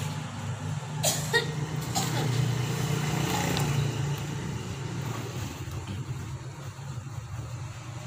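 Steady low hum of an engine running nearby, with a few light clicks about a second and two seconds in.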